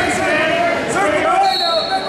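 Overlapping chatter of many voices echoing in a gymnasium, with a thin, steady high-pitched tone coming in about one and a half seconds in.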